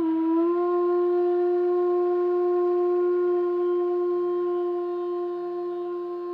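Bamboo bansuri holding one long, steady note with a small slide up into it near the start, fading slightly near the end.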